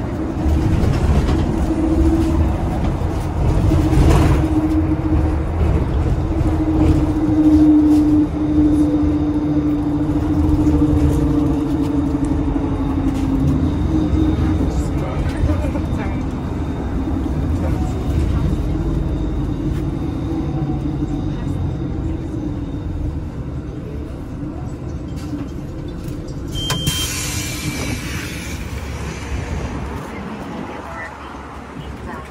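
City bus interior while the bus is under way: steady low engine and road rumble with a drivetrain whine that slowly falls in pitch as the bus slows. Near the end there is a short high tone and a burst of hiss.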